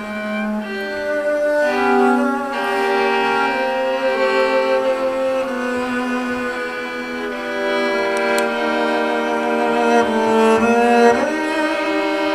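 Double bass and violin playing classical chamber music together: long, overlapping bowed notes that shift pitch every second or two.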